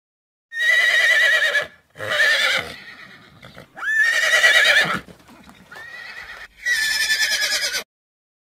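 A horse whinnying four times, each a loud call of about a second with a wavering, shaking pitch, with quieter noise between the later calls.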